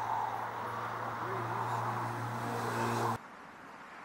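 Four-cylinder engine of a 1904 Panhard et Levassor running steadily at idle, with faint voices in the background. The sound cuts off suddenly a little over three seconds in.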